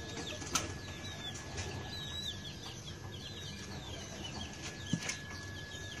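Many small birds chirping in quick, high, short calls throughout, over a faint steady high whine. Two sharp clicks stand out, about half a second in and about five seconds in.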